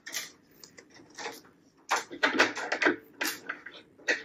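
Hands working jig-tying materials at a tying vise: a string of short rustles, scrapes and light clicks, busiest in the second half.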